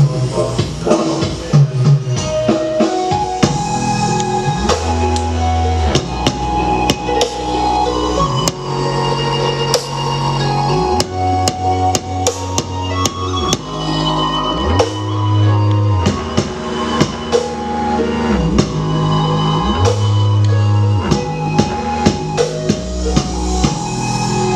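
Music with drums and a heavy bass line that slides up and down, played through a homemade power-amplifier kit fitted with mixed Sanken and Toshiba output transistors into stacked homemade speaker boxes. The sound is somewhat dropped and hoarse, which the uploader puts down to the supply voltage dropping.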